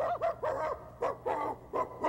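A performer's voice imitating a dog, giving a quick string of short barks and yips, about half a dozen in two seconds: the hypnotised character acting like a dog on command.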